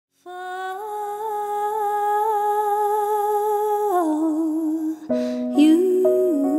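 A woman's voice humming a long held note with slight vibrato, stepping down in pitch about four seconds in. Near the end, accompanying chords come in as the song begins.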